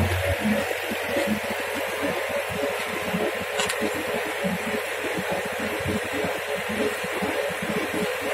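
Tractor-driven clay mixing machine running steadily while it extrudes mixed clay from its outlet onto a heap.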